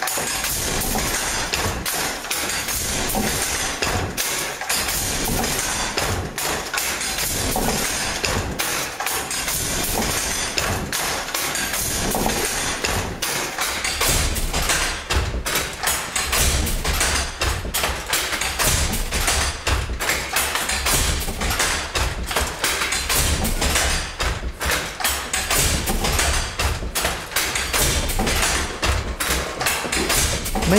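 Restored Jacquard hand loom weaving: a continuous wooden clatter of rapid knocks as the punch cards lift the harness cords, with heavier low thudding from about halfway.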